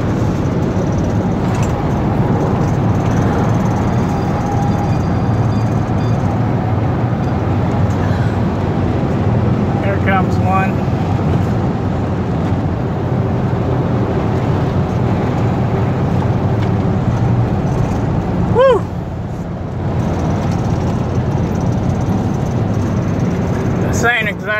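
Steady engine and road noise inside a Honda four-wheel-drive car's cabin, cruising at about 85 mph with the engine near 4,000 rpm. A brief gliding pitched sound cuts in about three-quarters of the way through.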